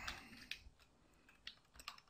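A few faint, scattered keystrokes on a computer keyboard.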